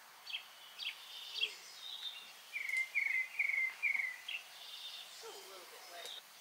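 Wild birds calling: a few sharp, high, falling chirps, then about midway a run of four quick falling notes.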